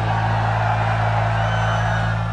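A rock band's last note held and ringing out, a steady low tone, under a large crowd cheering and whooping.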